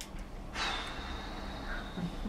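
A man drawing in a deep breath, the breath starting about half a second in.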